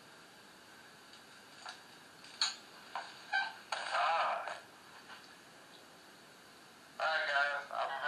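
Playback through the small speaker of a handheld digital voice recorder: a steady hiss with a few short clicks, a brief voice-like burst about four seconds in, and more voice-like sound near the end, as a supposed spirit voice is replayed.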